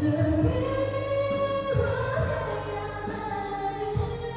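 A woman singing into a handheld microphone over a karaoke backing track, holding long, steady notes.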